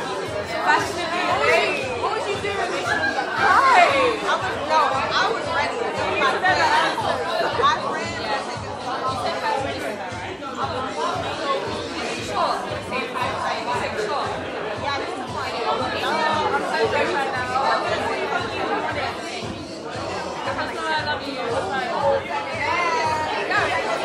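Several people talking over one another, with music and a steady beat playing underneath.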